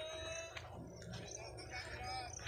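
A rooster crowing faintly: one long call that rises and holds, ending about half a second in, with faint voices after it.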